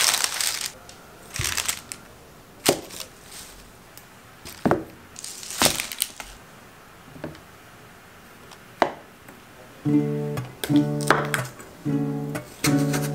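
Paper crinkling and a few separate knocks as food items and a can are set down on a wooden cutting board. About ten seconds in, acoustic guitar music begins with strummed chords.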